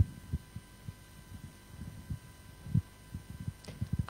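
Handheld microphone handling noise: a string of irregular low thumps and bumps as the microphone is picked up and brought into position, the loudest at the very start, over a faint steady electrical hum in the sound system.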